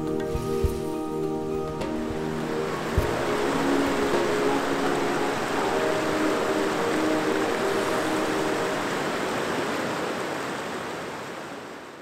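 A river rushing over rocks and shallow rapids, a steady hiss, with soft background music over it; the music thins out about two seconds in, and everything fades out near the end.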